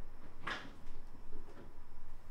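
A short knock of a kitchen cupboard door being opened or shut about half a second in, followed by faint handling sounds.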